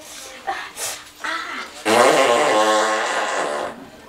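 A long, loud comic fart sound effect starting about two seconds in and lasting nearly two seconds, buzzy and pitched, dropping at first and then holding steady.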